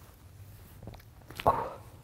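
A man crying, with a short, sharp sob about one and a half seconds in.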